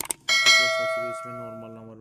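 A short click, then a single bell-like ding from a YouTube subscribe-button notification-bell sound effect. The ding rings out and fades over about a second and a half.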